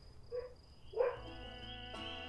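Background music starts about halfway in: sustained held notes with a wavering high tone above them. Just before it come a couple of short sounds.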